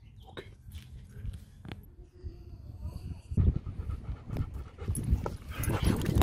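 A dog panting softly with a faint, thin whine. About halfway through, a louder rumble of wind on the microphone takes over.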